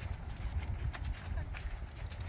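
Hoofbeats of horses walking on the soft dirt footing of a riding arena, an irregular run of dull steps, over a steady low rumble.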